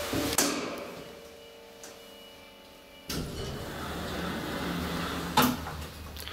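Elevator setting off: a sharp click about a third of a second in, then quiet for a few seconds. About halfway through, the drive cuts in with a sudden steady low hum as the car begins to travel, and there is another knock near the end.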